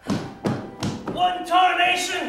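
Three heavy thumps about half a second apart, followed by a voice.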